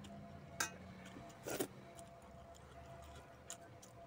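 Eating by hand from steel bowls: scattered faint clicks and ticks, a sharp click a little over half a second in, and a short, louder wet smack about one and a half seconds in.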